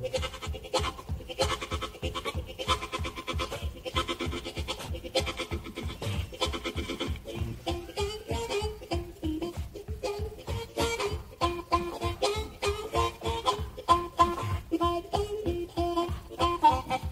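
Blues harmonica playing a fast, even chugging rhythm in imitation of train wheels clacking over a trestle, with a wailing melody line that moves more in the second half.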